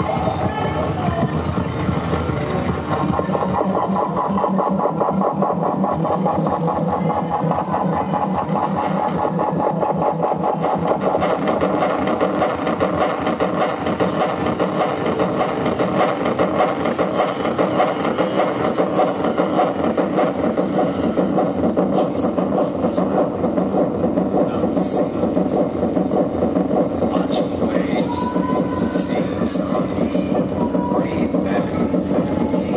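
Live electronic noise music played from laptops and a keyboard controller: a continuous, rapidly pulsing, engine-like buzz at a steady level, joined by sharp crackles about two-thirds of the way in.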